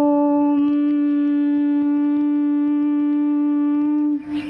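A conch shell (shankh) blown in one long, steady note of about four seconds, dipping slightly in pitch as it ends.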